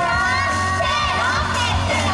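Several high voices shouting together in a long held call over a pop backing track with a steady beat, during a live idol stage performance.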